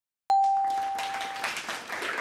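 Game-show correct-answer chime: a single bright ding that starts suddenly about a quarter second in and rings for about a second, with a hiss fading out behind it. It marks an answer being revealed on the board as correct.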